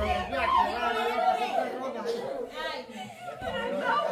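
Group chatter: several people talking over one another, with no single clear voice.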